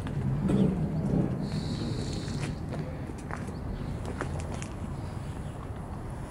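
Open-air background noise with faint distant voices in the first second or so, a brief high steady tone about a second and a half in, and a few light clicks.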